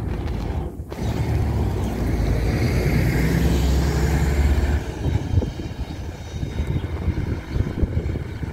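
Solaris Urbino 12 city bus pulling away and driving past, its engine loudest as it passes close, then fading as it moves off.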